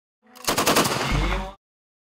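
A short burst of automatic machine-gun fire: rapid shots for about a second, running into a low rumble and cutting off suddenly.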